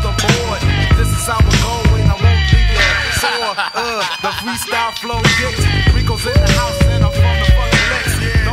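Old-school hip-hop music with a heavy bass beat; the bass drops out for about two seconds near the middle, then comes back.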